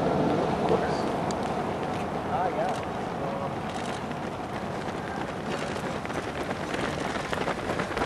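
A large pack of runners going by on the road: a steady patter of many footsteps on the pavement mixed with faint voices, easing off slightly in loudness.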